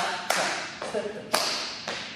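Sharp hand claps, about three of them roughly a second apart, keeping time on the counts of a dance routine.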